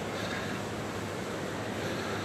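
Steady background noise with a low, even hum underneath, no distinct events.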